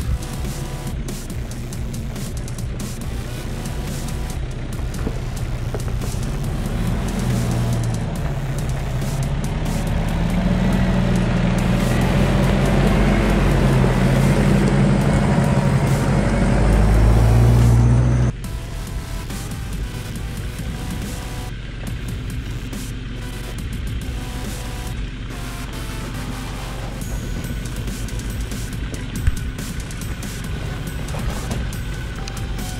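4WD vehicle engine working up a loose, rocky track. The revs rise and fall, and it grows louder as the vehicle nears, then cuts off sharply about eighteen seconds in. A quieter, steadier engine sound follows, with background music playing.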